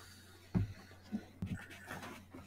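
A few soft, irregular bumps and breathy noises from someone moving near a video-call microphone, the loudest just over half a second in, over a steady low electrical hum.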